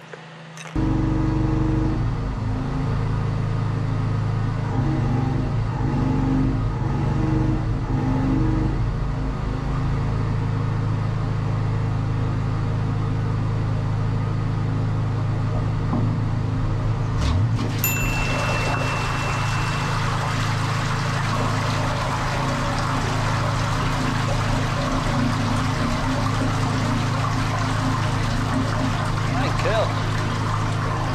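Drain-jetting unit's engine running steadily while it drives a high-pressure water jet through a just-cleared manhole outlet. About halfway through, a rush of water starts pouring through the manhole channel and keeps on over the engine.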